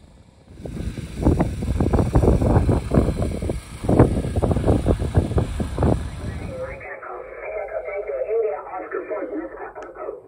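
A loud, irregular rumbling noise with a broad hiss for about six seconds, then it cuts to a single-sideband radio voice from the transceiver, thin and narrow with the bass and treble cut away.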